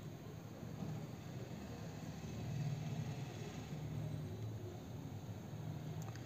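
Faint low background rumble and hum under a steady hiss, swelling slightly about halfway through.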